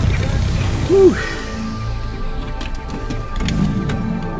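Background music with held, sustained tones and a brief swooping sound about a second in.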